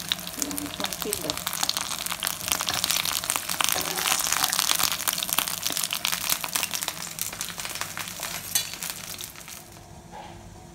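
Cabbage-leaf chicken dumplings sizzling and crackling as they pan-fry in oil. The crackle fades over the last couple of seconds.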